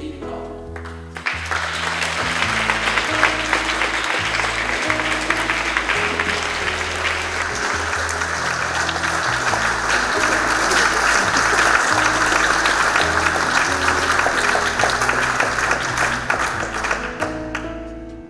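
Audience applauding over background music: the clapping starts about a second in, swells through the middle and dies away near the end.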